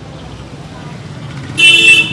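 A vehicle horn honks once, short and loud, near the end, over a steady low background rumble.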